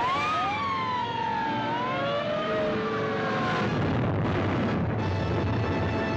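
Several sirens wailing over each other, their pitch rising and falling, over a dense wash of noise. About five seconds in, a held orchestral chord from the score takes over.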